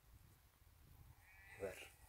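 A sheep bleats once, a short call about one and a half seconds in.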